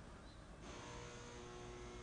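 Faint steady electrical hum in a pause between words, with a few faint steady tones joining about half a second in.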